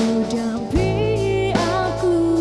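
A female singer singing a pop song live into a handheld microphone, backed by a band with drums. Under a second in she holds a long note.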